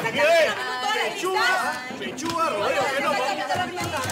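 Several people talking over one another at once: overlapping, unclear chatter of a group.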